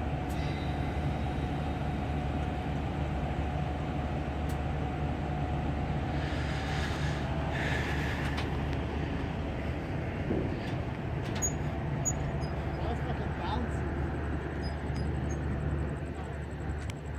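1993 Chevy Silverado's supercharged 5.7 L V8 idling steadily.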